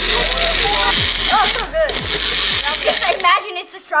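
Bullet-style personal blender running with its cup pressed down by hand, a steady motor noise that cuts off a little after three seconds in. Children's voices and squeals sound over it.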